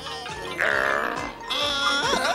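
Cartoon background music with a steady beat, and from about half a second in a loud, wavering, strained cry lasting most of a second.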